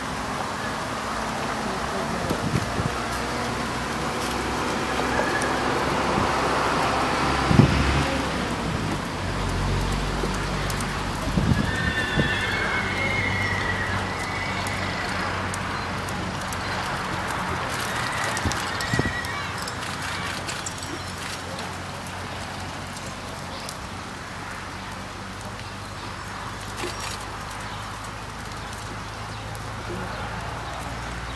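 Criollo horse's hoofbeats on a dirt arena as it runs a reining pattern, over a steady outdoor background hiss with a few louder thuds. A brief high horse whinny about twelve seconds in.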